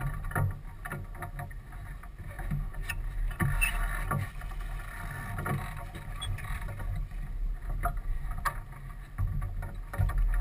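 A sailboat under way: a steady low rush of wind and water on the microphone and hull, with scattered short knocks and clicks from the crew working lines and gear in the cockpit.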